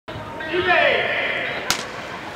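Crowd voices and calls, then a single sharp crack near the end: a starting pistol firing to start the race.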